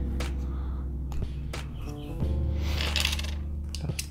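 A handful of small, sharp plastic clicks as LEGO bricks are handled and pressed together, over background music with a steady bass line.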